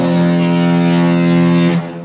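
The Disney Fantasy cruise ship's musical horn holds one long, loud note, the last of its tune, and cuts off suddenly near the end.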